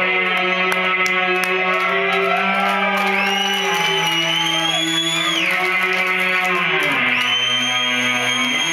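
Live instrumental band passage: sustained electric guitar chords under a bowed violin that slides up into long high notes twice, about three seconds in and again near the end, with the low chord shifting near the end.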